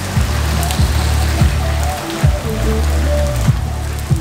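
Steady rain falling on a wet concrete driveway and lawn, a dense even patter. Background music with a deep bass line plays underneath.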